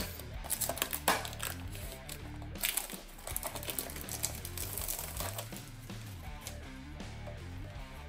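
Clear protective film crinkling as it is peeled off a painted polycarbonate RC buggy body shell, with a few sharper crackles, over steady background music.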